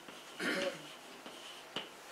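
Chalk writing on a blackboard: faint scratching as the letters are drawn, with a sharp tap near the end as the chalk strikes the board.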